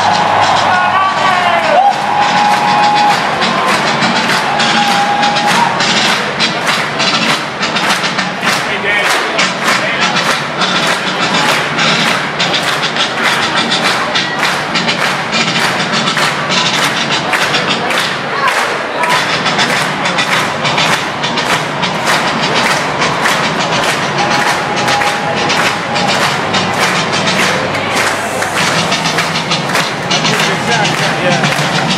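Marching band drums beating a steady march cadence, about two strokes a second, over crowd noise.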